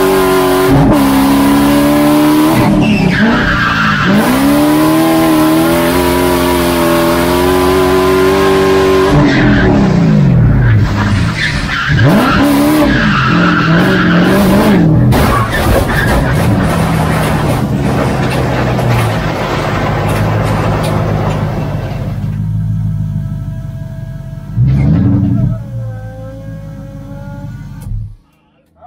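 BMW E46 drift car at full throttle, its engine revving hard with the pitch dipping and climbing again several times as it slides, over tyre squeal and skidding. Near the end the engine settles to a lower, steadier note with one short rev.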